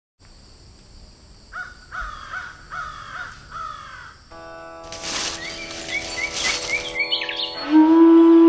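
Four harsh, crow-like bird calls over a steady high whine. About halfway through, music of held notes fades in, with short bird chirps, and a strong sustained woodwind-like note enters near the end.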